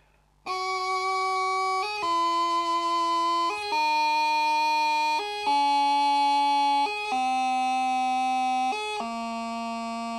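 Bagpipe practice chanter playing a slow descending scale: six held notes, each about a second and a half long, stepping down in pitch. A short G grace note is flicked in at every change of note.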